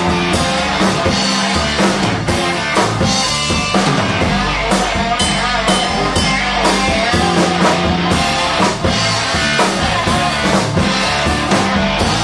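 Live blues band playing at full volume: a hollow-body electric guitar, an electric bass and a drum kit keeping a steady beat.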